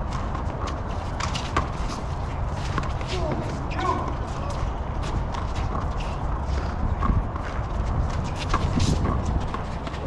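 Small rubber handball smacking sharply and irregularly off the concrete walls and the players' gloved hands during a rally, with shoes scuffing on the court.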